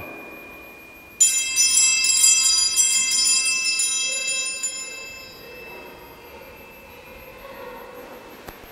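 Altar bells rung at the elevation of the chalice: a cluster of small bells struck repeatedly for about two seconds from about a second in, then ringing away over the next few seconds.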